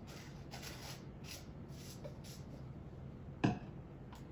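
Light handling noises from a glass cup and syrup bottle, soft rustles and touches, then one sharp click about three and a half seconds in, over a low steady hum.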